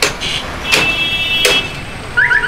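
Dense city street traffic: cars, motorcycles and auto-rickshaws running close by. A vehicle horn sounds for under a second midway, and sharp knocks repeat about every three-quarters of a second.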